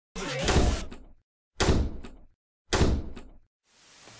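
Three heavy slam-like impacts about a second and a quarter apart. Each is loud and sudden, fades over most of a second, and ends in a faint click. They sound like an edited intro sound effect.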